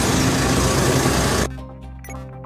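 Steady outdoor noise with a low engine hum from trucks, cut off abruptly about one and a half seconds in by a quiet outro jingle of sustained notes and light ticks.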